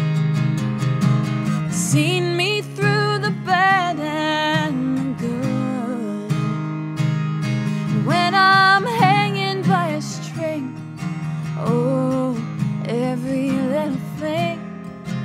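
Acoustic guitar strummed steadily while a woman sings over it in short melodic phrases.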